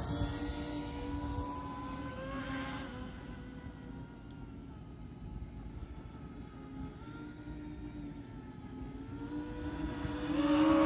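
Electric motors and propellers of an E-Flite Convergence VTOL model aircraft flying in multi-rotor mode on a fast pass, making a steady buzzing whine. The whine fades as the aircraft flies off and grows louder again near the end as it comes back.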